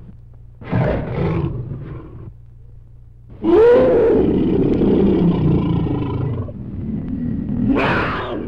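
A large animal roaring, three roars in all: a short one about half a second in, a long, loud one from about three and a half seconds in that opens with a rising-then-falling pitch, and another that starts near the end.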